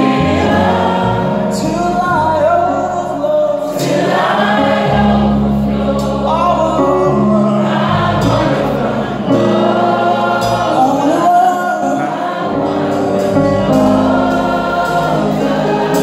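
Live soul band of drum kit, keyboard and electric guitar playing a slow song through a PA, with singing over it.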